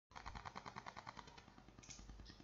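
A faint, rapid series of clicks, about ten a second, starting just after the silence and fading a little after the first second.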